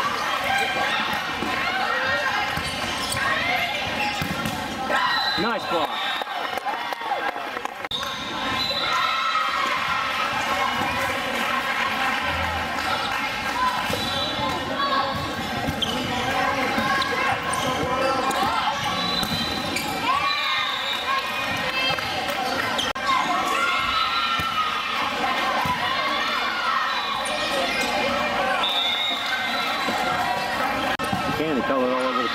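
Indoor volleyball match: the ball being hit and players moving on the hard court, with voices from players and spectators, all echoing in a large hall.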